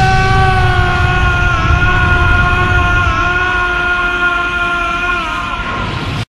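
A man's anime-style power-up scream, one long yell held at a steady pitch over a low rumble. It stops about five and a half seconds in.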